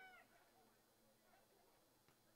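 Near silence: faint open-air field ambience, with one brief, faint, high-pitched call that rises and falls right at the very start.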